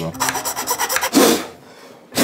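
Rough rasping and scraping of a hand tool on the metal gearbox shell of an airsoft gun, with one stronger stroke just past a second in, as material is taken off the shell to make room for the spring of a drop-in electronic trigger unit.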